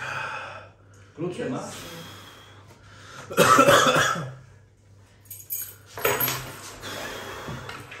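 A man's pained vocal noises and hard breaths in short outbursts, the loudest about three and a half seconds in: he is suffering the burn of a super-hot chip made with Carolina Reaper and Trinidad Moruga Scorpion peppers.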